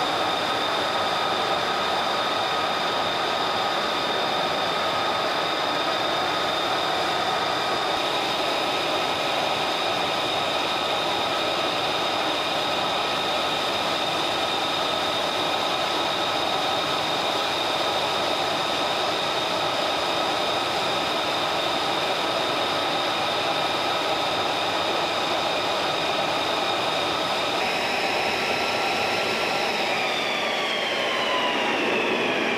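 U.S. Marine Corps F-35B Lightning II jet running at ground idle, a steady, loud, high-pitched whine made of several held tones over a rushing noise. The tones step slightly higher near the end.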